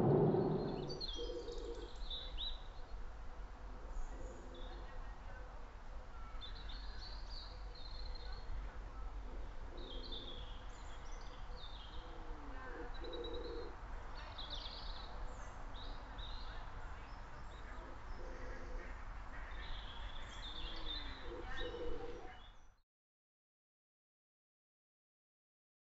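Wild birds calling around a lake: many short, high chirps from small birds, with a lower call repeated every few seconds, over a faint low rumble. About a second in, it takes over from car-cabin noise, and it cuts off abruptly near the end.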